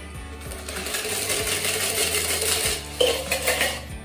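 A shaken cocktail double-strained from a metal shaker tin through a Hawthorne strainer and a fine-mesh strainer into a martini glass: a steady pour with light metal clinking, and a sharp clink about three seconds in.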